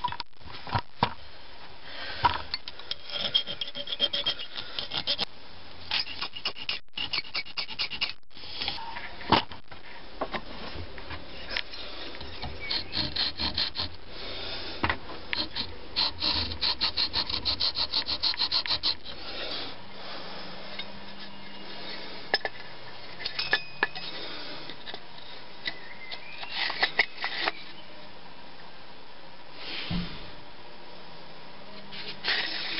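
Hand file rasping across a small brass seppa (sword separator) clamped in a vise, in runs of quick back-and-forth strokes, several a second, with short pauses. The strokes are rounding off and shaping the edges of the piece.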